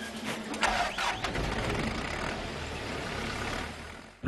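Lovol Gushen combine harvester's diesel engine running, with a few knocks and clatters in the first second and a deeper rumble building from about half a second in as it comes up to working speed.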